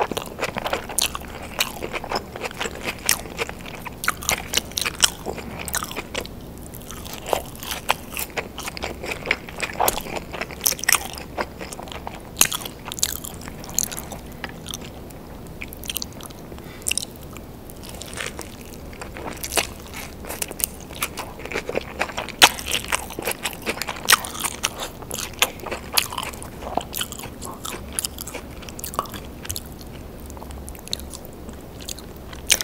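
Close-miked eating of a cheeseburger and fries: bites and chewing with many irregular crisp crunches and wet mouth clicks.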